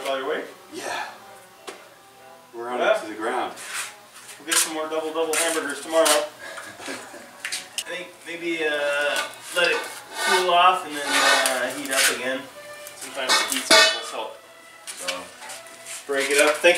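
Indistinct voices with repeated short metallic clinks of steel tools and pipe being handled.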